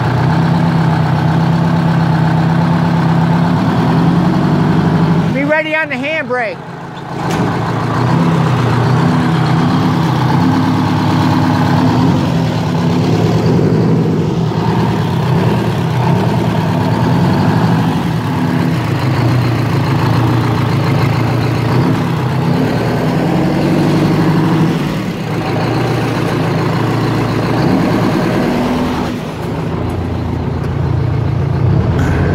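Walter RDUL truck's diesel engine running on seven cylinders, one cylinder dead because the fuel lines to one injector were left off. Its speed rises and falls as the truck is moved. A short break comes about six seconds in.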